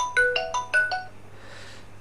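A short electronic alert melody of quick, bell-like notes, about five a second, stops about a second in and is followed by a faint brief hiss.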